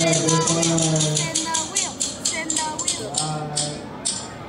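A spin-the-wheel phone app's wheel ticking as it spins: quick ticks at first that space out as the wheel slows to a stop.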